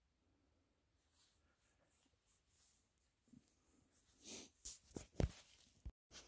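Faint rustling and crackling of movement over dry leaf litter and twigs, with a few sharper snaps about four to five seconds in.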